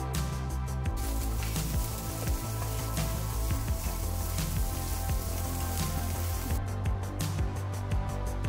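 Background music over food sizzling in a frying pan as it is reheated and stirred; the sizzle starts about a second in and stops shortly before the end.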